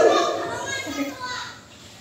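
Faint children's voices in the background, dying away toward the end.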